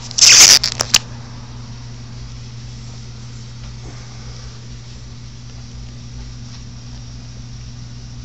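Handling noise on the camera's microphone as it is picked up and moved: a loud rustling, scraping burst with a few sharp knocks, lasting under a second near the start. After it, only a steady low hum remains.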